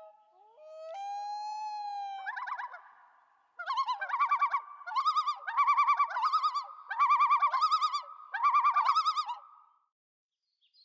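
Common loon calling: a long, drawn-out wail about a second in, then a yodel of loud, quavering phrases repeated over and over until it stops just before the end.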